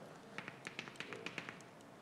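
Faint footsteps on a hard floor: a string of small, quick taps and clicks lasting about a second and a half.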